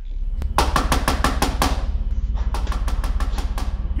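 Rapid knocking on a door with a fist, in two flurries of about a second each, over a steady low hum.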